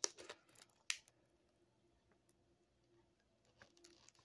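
A plastic mailing packet being peeled apart by hand at its sticky seal: a few faint crinkles and clicks in the first second, then near quiet, with soft rustling again near the end.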